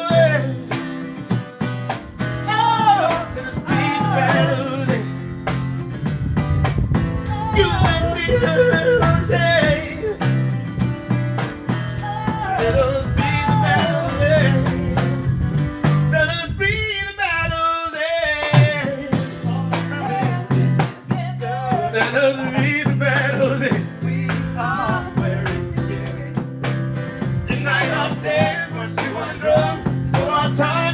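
A live band plays a song: a male lead singer over acoustic guitar, electric bass guitar and drum kit. About sixteen seconds in, the band drops out for roughly two seconds, leaving the voice alone, then comes back in.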